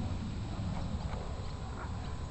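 Dalmatian panting right at the microphone, with small wet clicks of its open mouth about three times a second, over a steady low rumble.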